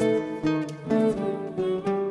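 Two acoustic guitars playing a slow plucked passage, with a new note or chord struck roughly every half second and left to ring.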